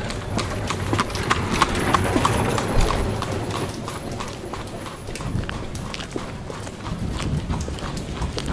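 Horse's hooves clip-clopping, a long run of sharp knocks on a hard surface, laid in as a period sound effect.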